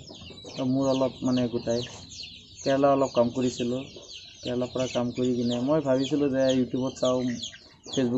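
A flock of farm chickens clucking and chirping steadily in a poultry shed, under a man's voice.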